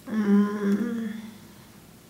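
A woman humming one short, closed-mouth "mmm" at a fairly steady pitch, lasting just over a second and then stopping.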